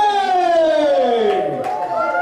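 Voices whooping: one long high call slides steadily down in pitch over about a second and a half, overlapped by other voices, and a new call starts near the end.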